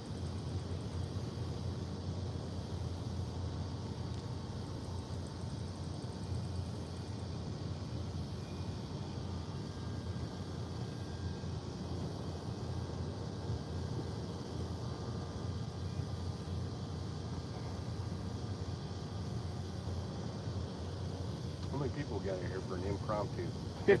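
Steady low rumble of outdoor background noise, with a few words spoken near the end.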